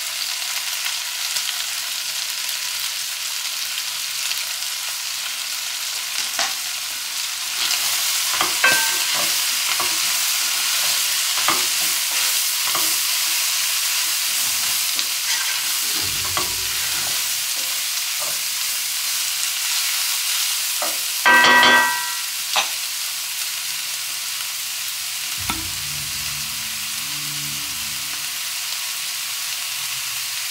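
Spinach and vegetables sizzling steadily in a frying pan, with a wooden spatula scraping and knocking against the pan as they are stirred. A short, loud squeak about two-thirds of the way through.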